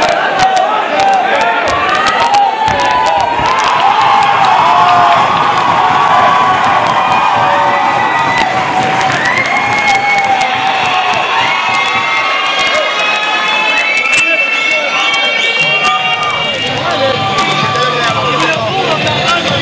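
Crowd of fight spectators cheering and shouting loudly, many voices at once, as the bout ends.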